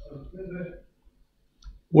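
A pause in a man's speech: a faint low murmur, then a moment of silence broken by a small click, and his voice starts again just before the end.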